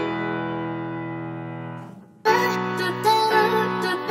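Background music. A held chord fades away, there is a brief gap about halfway through, and then the music comes back in fuller.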